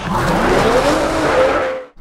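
Intro sound effect of a car engine revving, its pitch rising, cutting off suddenly near the end.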